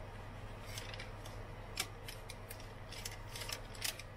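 Light clicks and crinkles of a thin aluminium foil pie tin as fingers press pastry lattice strips down onto its rim. The clicks come irregularly, the sharpest about two seconds in and several in quick succession near the end.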